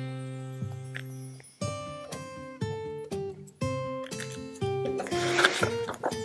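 Background music on acoustic guitar: picked notes and chords that ring out and fade, a new one about every second.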